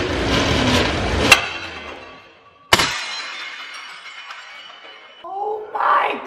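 A roller-shutter cabinet door sliding open and catching, then a ceramic plate dropping out and smashing, with a long rattle of ringing shards after the crash. A short vocal reaction comes near the end.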